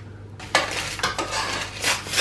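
Crinkly rustling of a packet of panko breadcrumbs being pulled open by hand, starting about half a second in.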